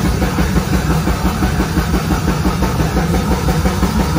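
Live progressive metal band playing a heavy passage: dense, distorted low end driven by a rapid, even pulse of about nine beats a second.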